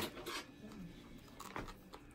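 Faint rustling and crinkling of a plastic wound-vac drape handled by gloved hands, with a short sharp click right at the start.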